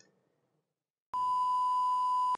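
Silence, then about a second in a steady, single-pitch, high test-card beep starts and holds: the tone that goes with a TV 'Please Stand By' card.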